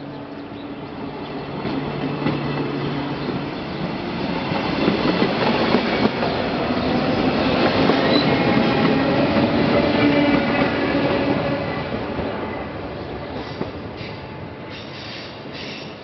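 Travys electric train passing close by on a station track. Its sound swells to a peak from about five to eleven seconds in, then fades, with a whine of several steady tones over the rail noise and a few brief high squeaks near the end.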